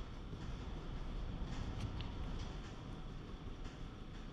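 Water swishing gently in a plastic gold pan as the last of the concentrates are swirled down to show the fine gold, a faint steady wash that swells a little in the middle.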